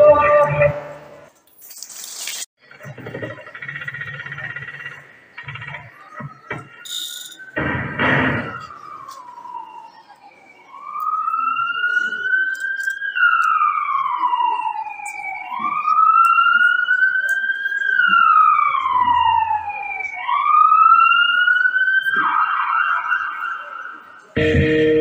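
A siren wailing, its pitch rising and falling slowly in long sweeps of about two to three seconds each, starting about ten seconds in and running for roughly twelve seconds. Just before it, dance music cuts off about a second in, followed by a short pause with scattered faint sounds.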